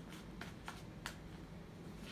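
Tarot cards being shuffled by hand: a few short, sharp snaps of card against card about a third of a second apart, over a faint steady low hum.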